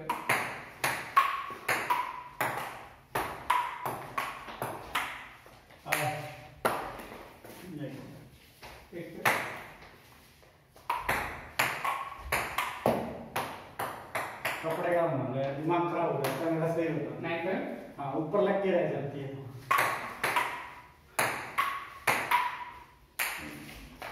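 Table tennis rallies: the ball clicks quickly back and forth off the bats and the wooden tabletop, several rallies with short pauses between them.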